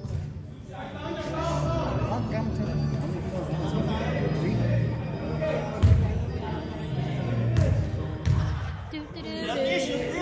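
Basketball game in a reverberant gym: indistinct, echoing voices of players and onlookers, with a single sharp thud about six seconds in.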